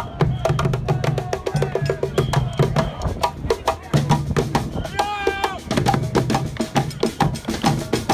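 Street drumming band of barrel drums and snare drums, played back at four times speed so the hits come rapid-fire, with high-pitched, sped-up crowd voices mixed in.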